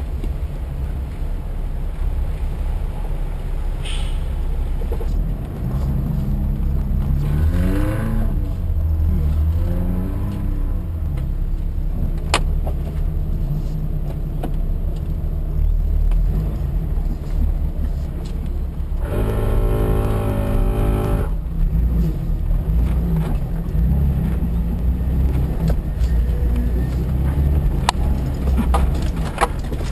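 Jeep engine running under load as it drives off-road over rocky gravel, with a low steady rumble. The revs rise twice in quick succession about seven to ten seconds in, and a steady pitched tone sounds for about two seconds later on.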